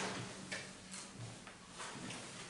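Quiet room with a steady low hum and a few faint, scattered clicks and knocks, the small handling noises of people shifting papers and furniture at meeting tables.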